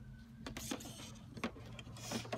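Plastic embroidery hoop being fitted onto an embroidery machine's embroidery arm: a few light clicks and knocks over a low steady hum.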